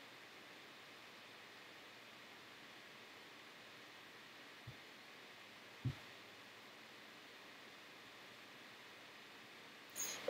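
Near silence: faint room tone, with two short, dull low thumps about four and a half and six seconds in, the second louder.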